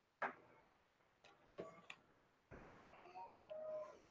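Near silence: room tone with a few faint, brief clicks and soft noises, and a short faint hum near the end.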